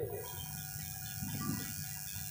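Faint background music of steady held tones, heard while the speech pauses.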